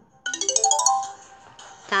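Short rising chime jingle from a children's Bible story app, the reward sound for finding a hidden Bible gem: a quick run of notes stepping up in pitch with a sparkly high shimmer, over in under a second.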